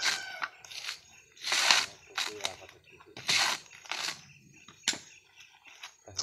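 Coconut husk being prised and ripped off on a husking spike: two loud tearing rips of fibrous husk, a little under two seconds apart, with smaller crackles in between and a sharp snap near the end.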